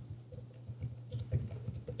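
Computer keyboard typing: a run of light key clicks.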